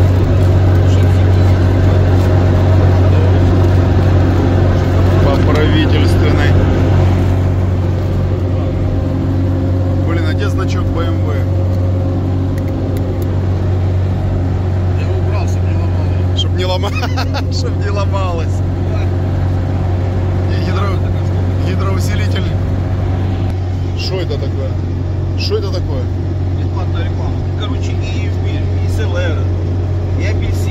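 Steady low engine and road drone inside the cab of a UAZ off-roader cruising at highway speed, easing a little about twelve seconds in.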